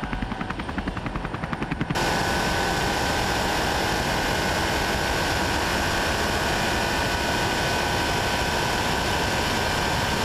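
A fast rhythmic chopping sound that cuts off abruptly about two seconds in. It is replaced by the steady, loud roar of a SEAT Leon CUPRA 280 flat out on a long straight, with a steady engine whine over rushing wind and tyre noise.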